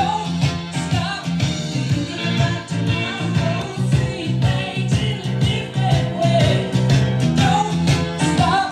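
A rock song with singing, played on a 1979 Zenith Wedge JR596W stereo through its Allegro speakers and heard in the room.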